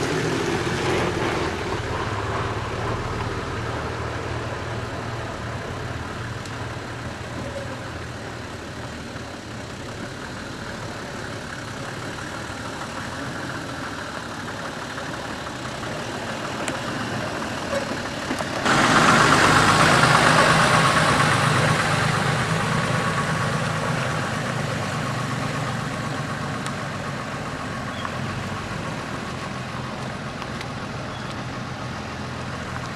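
Four-wheel-drive engine running at low revs as the vehicle crawls over rock, suddenly louder about 19 seconds in and then slowly fading.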